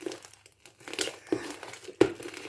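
Fluffy slime made with shaving foam and borax, kneaded and squeezed between bare hands while still being mixed. It gives a few short, irregular squishes.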